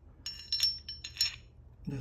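Double Diamond stainless threaded barrel clinking against the Glock 43X slide as it is fitted into place: a quick run of light metallic clinks lasting about a second, with two louder ones.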